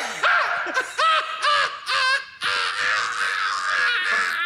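A man laughing hysterically: shrill, whooping laughs in quick separate bursts about two a second, running together into one continuous laugh from about halfway.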